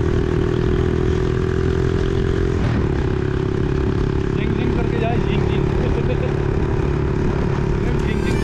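Motorcycle engine running steadily as the bike rides through city traffic, heard from on the moving bike with a steady rush of wind and road noise.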